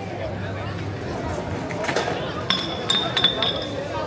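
A quick run of sharp clinks, ringing briefly in a high tone, from about halfway through, over the chatter of people on a crowded street.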